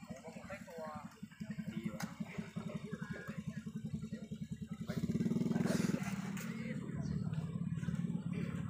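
A motorcycle engine running close by with a steady pulsing note, growing louder about five seconds in, with scattered voices of people around it.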